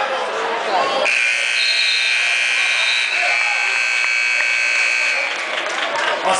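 A wrestling-mat scoreboard buzzer sounds about a second in, a long steady electronic buzz held for about four seconds, its tone shifting partway through, over gym crowd chatter.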